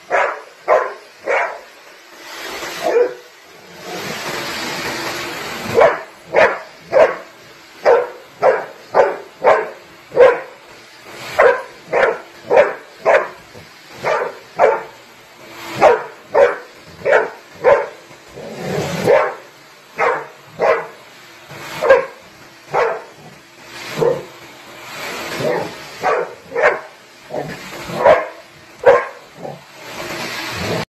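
Golden retriever barking over and over, short sharp barks at about two a second. A steady rushing noise runs for about two seconds a few seconds in.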